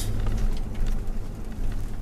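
Steady low engine and road rumble heard inside the cab of a moving vehicle.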